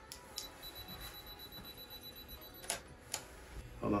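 Quiet room with a few faint, sharp clicks and a faint high steady tone lasting about two seconds.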